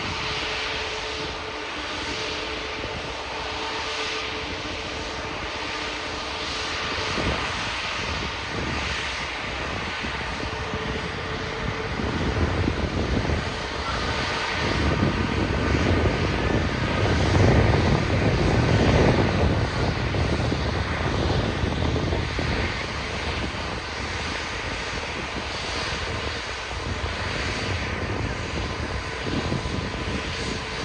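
Airbus A380 jet engines running as the four-engined airliner taxis: a steady rumble with a thin whine, swelling louder for several seconds midway and easing off again.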